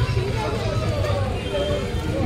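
Street noise: indistinct voices of people quarrelling by the road over a steady low rumble of traffic.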